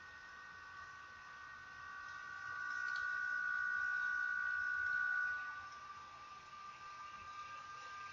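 A faint, steady high-pitched whine made of a few pure tones over low hiss. It swells louder for about three seconds in the middle, then settles back.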